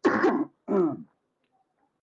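A man clearing his throat twice in quick succession, the first rasp harsher than the second.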